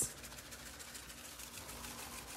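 Faint, rapid ticking rattle of a plastic shaker jar of dried parsley flakes being shaken over raw chicken thighs in a skillet.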